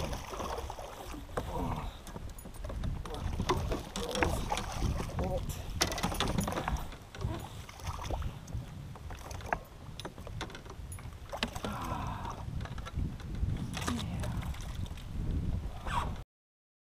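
A hooked fish splashing at the surface beside a fishing kayak as it is played and reeled in. Scattered sharp knocks and clicks come from the kayak and tackle, over a steady low rumble.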